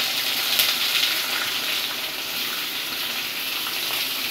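Sliced onions sizzling as they go into hot mustard oil in a kadhai with whole spices: a steady frying hiss.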